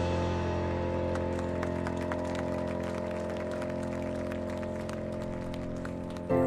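Marching band holding one long sustained chord that slowly fades, with faint scattered clicks above it.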